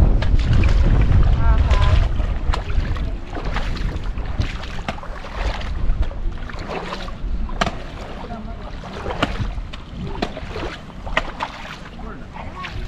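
Footsteps splashing and sloshing through shallow water, in irregular strokes, with wind buffeting the microphone, heaviest in the first couple of seconds.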